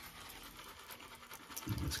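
Faint scratchy rubbing of a synthetic shaving brush working soap in a ceramic scuttle, with a man starting to speak near the end.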